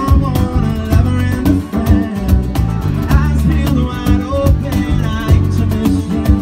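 A small live band playing: strummed acoustic guitar, a cajon beat, keyboard and a man singing lead.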